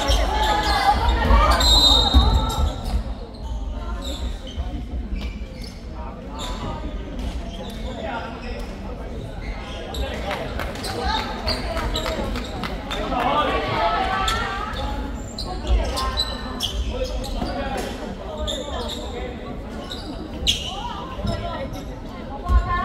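Basketball game in a large, echoing sports hall: the ball bouncing on the wooden court in repeated knocks, with voices of players and spectators. A brief high referee's whistle blast comes about two seconds in.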